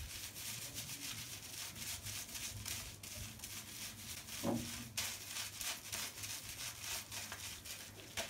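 Fingertips scrubbing shampoo lather into a wet scalp and Marley twists: soft rubbing in quick, repeated strokes. A short pitched sound about halfway through.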